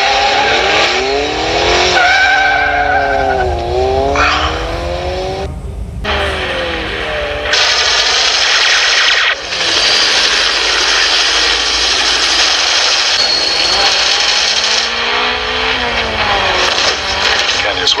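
Film soundtrack of a car chase: the white Lotus Esprit S1's engine revving, its pitch sweeping up and down, with a brief tyre squeal. After a sudden cut about six seconds in comes a loud rushing noise lasting several seconds.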